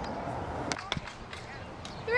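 Two sharp knocks about a fifth of a second apart, a little under a second in, from a softball fielding drill, over a steady outdoor background.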